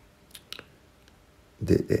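Quiet pause with two short faint clicks a little under a second in, then a man's voice resumes just before the end.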